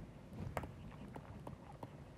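Faint, irregular light taps and clicks of a pen on the writing surface during handwriting.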